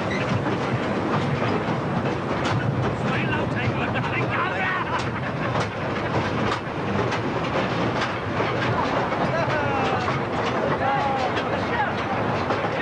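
Underground man-riding train carrying miners along a colliery roadway, its carriages rattling and clattering steadily on the rails with scattered metallic clanks.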